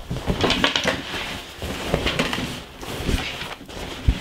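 A heavy raw denim jacket being flipped over and handled on a table: irregular fabric rustling and shuffling, with a few soft knocks.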